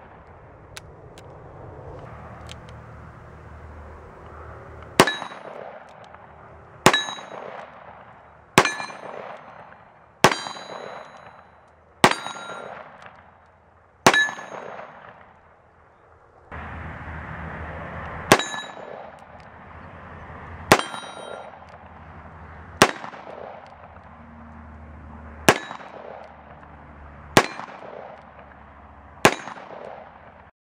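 Dan Wesson .357 revolver fired in two strings of six shots, about two seconds apart. Each shot is a sharp crack followed by a brief metallic ring.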